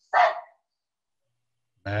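A single dog bark, short and loud.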